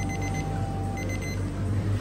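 Digital kitchen timer sounding its alarm: two quick trains of high beeps about a second apart. The waffle-iron time for the croffles is up.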